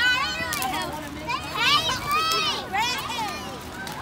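Young girls' high voices shouting and calling out, several at once, from a passing parade float.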